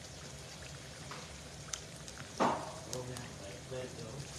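Beef patties deep-frying in a skillet of oil: a steady sizzle with scattered small crackles and pops. A brief louder noise comes about halfway through.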